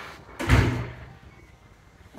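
An interior door shutting with a single loud thud about half a second in, dying away quickly.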